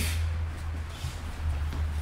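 Steady low background hum with no other clear sound.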